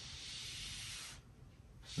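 Bristle brush stroking over wet oil paint on canvas: a faint, soft hiss lasting about a second, then it stops.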